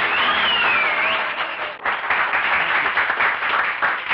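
Audience applauding after a song ends, with one brief gliding whistle in the first second.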